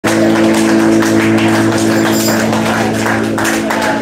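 Live band of acoustic guitar, bass, keys and percussion playing the close of a song: a chord held under percussion strokes, stopping about three and a half seconds in.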